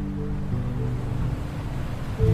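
Acoustic guitar notes ringing out slowly over the steady wash of ocean waves breaking on a beach.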